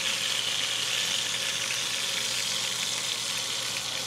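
Butter and chicken juices sizzling steadily in an enamelled Dutch oven as the seared chicken thighs are lifted out, with a range-hood vent fan humming underneath.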